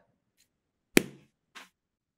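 A single sharp click about a second in, followed by a brief faint sound.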